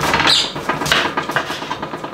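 A kitchen knife chopping through sweet potatoes into chunks in a run of quick strokes, each knocking on the surface beneath, with a short high squeak about a third of a second in.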